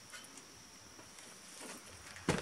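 Faint outdoor quiet with a steady high insect drone, and a few soft knocks and scuffs of work boots as a man climbs down off a steel wall-mounted bracket.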